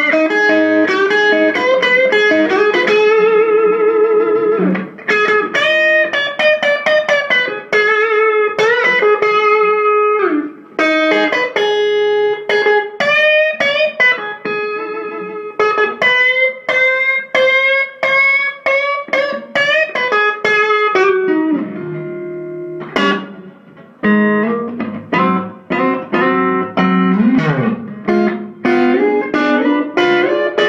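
Electric guitar (a thinline Telecaster with Kloppmann '60 pickups) played through an Electro-Harmonix Soul Food overdrive into an ATT Little Willie 15-watt all-valve combo with two 8-inch speakers. It plays lead lines of single notes with string bends and vibrato, pausing briefly twice, in a pushed, mid-forward tone.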